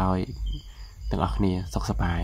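A man speaking in short phrases, with a pause of about a second in the middle.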